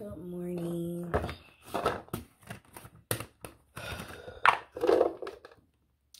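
A woman's wordless voice: a held, pitched sound about a second long, then scattered breaths and small vocal noises, with sharp clicks and light knocks of handling close to the microphone.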